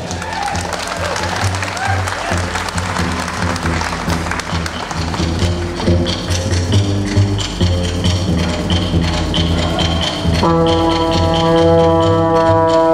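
Live big band keeping a steady Latin groove on bass and drums, with audience applause in the first few seconds as a trumpet solo ends. A trombone solo comes in loud at the microphone about ten and a half seconds in.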